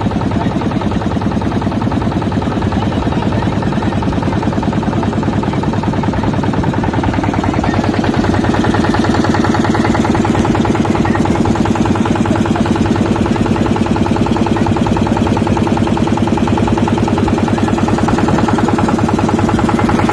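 Motorboat engine running steadily with a fast, even beat, getting a little louder about halfway through.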